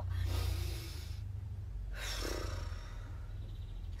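A woman breathing deeply in a slow breathing exercise: a long, audible breath out during the first second, then a shorter breath about two seconds in. A steady low rumble runs underneath.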